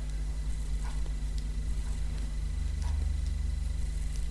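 Steady low electrical hum with a few faint, soft clicks of knitting needles as stitches are worked.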